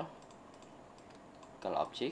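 Sparse, faint clicks from a computer mouse and keyboard over low room hiss, with speech resuming near the end.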